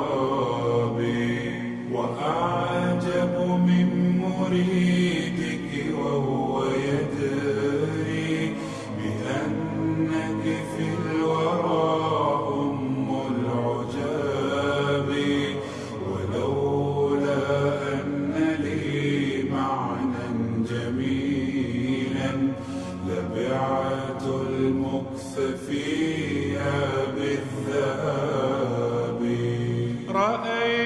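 Slowed-down, reverb-heavy nasheed: male voices chanting a wordless melody in layered harmony.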